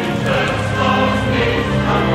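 Choral music: a choir singing held notes over a full, steady musical backing.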